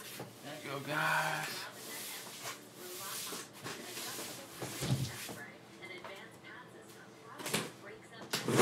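A cardboard trading-card case handled and shifted on a table, with a thump about five seconds in and another near the end, under indistinct talking.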